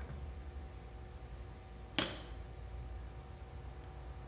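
A single sharp click about halfway through, over a faint steady electrical hum.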